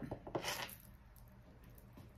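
A small glass cosmetic bottle being handled, with a brief clink and clicking in the first second, then faint room tone.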